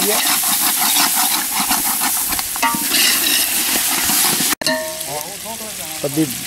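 Mutton frying in ghee in a metal pot over a wood fire, sizzling steadily, while a metal spatula stirs and scrapes it in quick regular strokes through the first couple of seconds. This is the bhuna stage, the meat being browned in fat before water is added. The sound cuts out briefly about four and a half seconds in.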